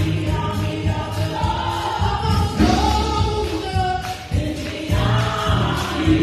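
Gospel praise team of several singers singing together into microphones, over instrumental accompaniment with a heavy bass.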